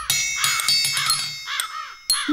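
Cartoon birds cawing, several short crow-like caws in a row, over music with sustained high chiming tones.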